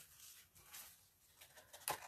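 Quiet handling of paper and cardstock, ending in a short sharp rustle near the end as a scrapbook layout page is picked up.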